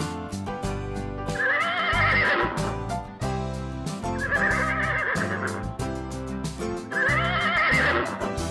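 A horse whinnying three times, about three seconds apart, each call about a second long with a quavering pitch, over background music.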